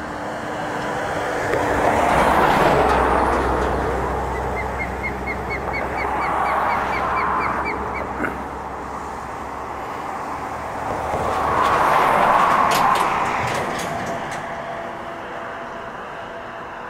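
Road traffic passing over a bridge: three vehicles go by in turn, each swelling up and fading away, the first with a deep rumble under it. In the middle a quick, even run of high chirps sounds, about four a second.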